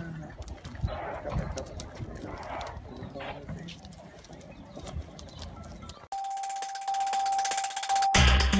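Outdoor street ambience with indistinct murmuring voices. About six seconds in it cuts off abruptly into a news channel's logo sting: a single held tone over a bright shimmer.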